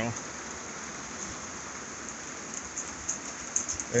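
Steady rain heard from inside a barn: an even hiss with scattered light ticks of drops.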